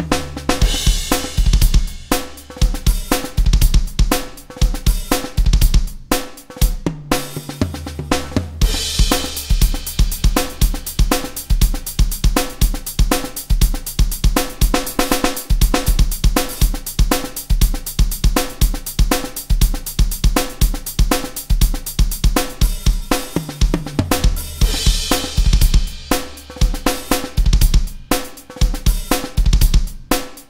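Rock Drum Machine 2 app playing a programmed rock drum song at 120 BPM: sampled kick, snare, hi-hat and cymbals in a steady beat, changing pattern from section to section with fills. The cymbals grow thicker from about nine seconds in until about twenty-four seconds in.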